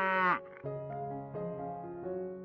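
A cow's moo ends sharply about a third of a second in. Soft background music with held notes fills the rest.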